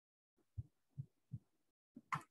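Near silence, broken by a few faint, short low thumps about a third of a second apart.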